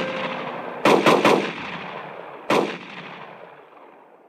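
Gunshots with long echoing tails: three in quick succession about a second in, then a single shot about two and a half seconds in, its echo dying away near the end.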